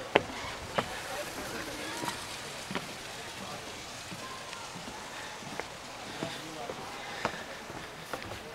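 Footsteps knocking now and then on a wooden boardwalk and stairs, over a steady hiss, with faint voices of other people in the distance.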